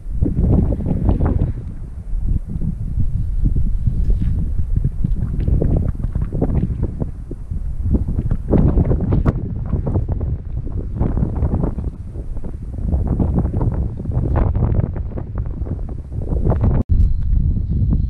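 Wind buffeting the microphone in uneven gusts, a loud low rumble that rises and falls, broken by a very brief drop-out near the end.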